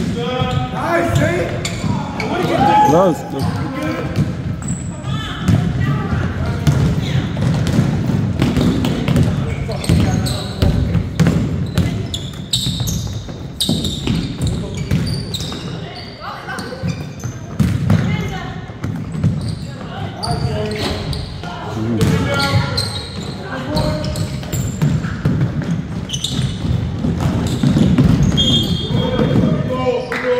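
Basketball game in a gym: a ball bouncing on the hardwood floor, with many short knocks amid players' and spectators' voices and calls, echoing in the large hall.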